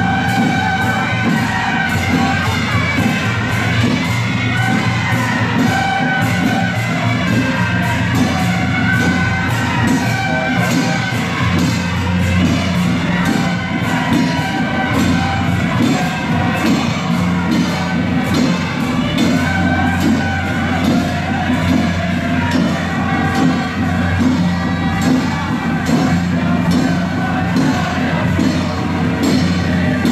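Loud processional music with a fast, steady percussion beat and held melodic tones over it, with crowd noise underneath.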